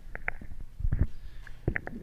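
Handling noise from a handheld microphone as it is passed between people: low, dull thumps and bumps, loudest about a second in and again shortly before the end.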